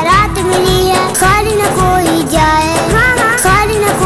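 A boy singing a devotional manqabat over instrumental backing, with a steady low beat.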